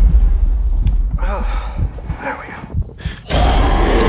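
Trailer sound design: a deep low rumble fading away, two short vocal sounds about one and two seconds in, then a loud rushing noise that cuts in suddenly near the end.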